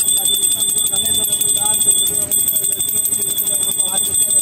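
A hand bell rung without pause, giving a steady high ringing, under a voice reciting puja mantras.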